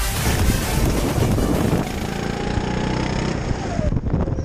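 Electronic dance music that gives way about halfway through to a go-kart engine running on track, with its note slowly rising and wind rushing over the kart-mounted microphone.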